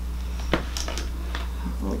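A few light clicks and taps of a small plastic comb being picked up and handled, the sharpest about half a second in, over a steady low hum.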